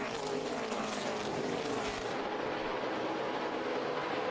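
NASCAR Cup stock cars' V8 engines running flat out, heard through the TV broadcast: the engine note falls in pitch over the first couple of seconds as the cars go by, then holds steady.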